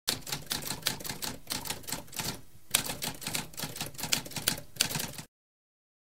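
Typewriter typing: a rapid run of keystrokes with a short break about halfway, cutting off abruptly shortly before the end.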